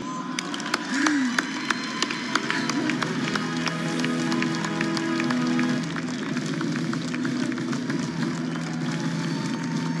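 A large audience applauding, with music of held, sustained notes playing under the clapping from about three seconds in.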